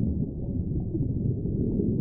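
A steady low rumble with no higher sound above it, which starts and cuts off abruptly.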